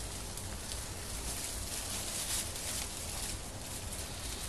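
Quiet room tone with a low steady hum and faint scattered rustles, no distinct event.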